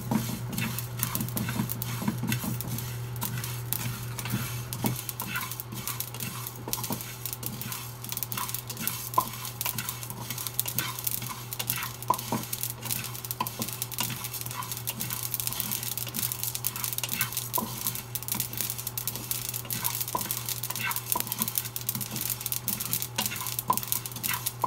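Wooden spatula stirring and scraping dry spice seeds (coriander and sesame) as they toast in a nonstick frying pan: a steady run of small scrapes, rattles and light crackles, over a steady low hum.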